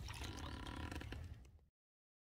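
Water dripping and lapping around a kayak and its paddle, with small clicks over a steady low rumble; the sound cuts off suddenly near the end.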